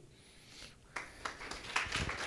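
An audience starts applauding about a second in, the clapping of many hands building quickly.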